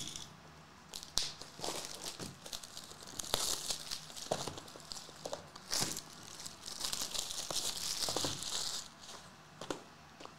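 Plastic shrink-wrap being torn and crinkled off sealed trading card boxes, in two longer stretches of rustling, with scattered taps and clicks of cardboard in between.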